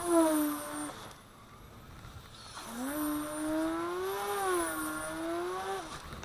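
Electric RC airplane on a 5S battery, about 3 kW, making a high-speed pass: a strong motor whine in the first second that stops abruptly, then from about two and a half seconds in a second burst of power whose pitch rises and wavers before cutting off just before the end.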